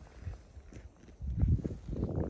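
Footsteps in snow, faint at first, then heavier low thuds from a little past halfway.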